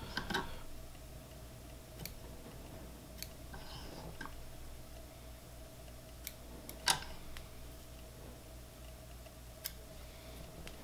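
Light snips of scissors trimming elk hair at a fly-tying vise right at the start, then scattered small clicks from handling at the vise, the sharpest about seven seconds in, over a steady faint hum.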